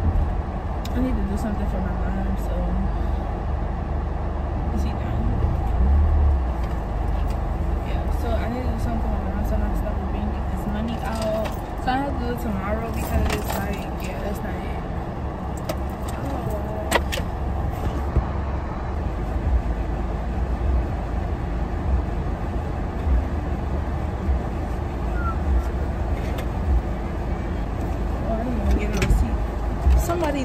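Steady low rumble of a car heard from inside the cabin, with faint indistinct voices and a few light clicks.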